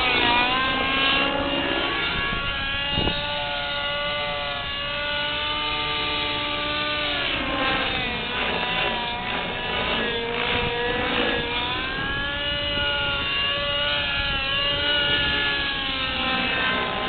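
Align T-Rex 600 radio-controlled helicopter in flight, its motor and rotor giving a steady whine whose pitch repeatedly dips and rises as it manoeuvres.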